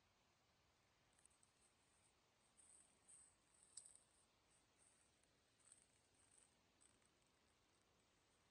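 Near silence, with only faint, scattered high-pitched flickers.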